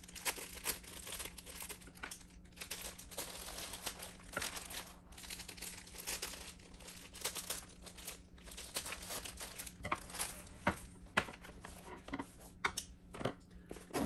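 Clear plastic protective wrap crinkling and tearing as it is cut and pulled off a tote bag's handles, with a few sharp clicks near the end.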